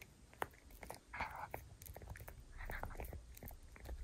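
Tiny toy poodle puppy gnawing a bone-shaped chew close to the microphone: irregular, quiet clicks and crunches of teeth on the chew, with two short hissing sounds about a second and three seconds in. The owner puts the heavy chewing down to itchy, teething gums.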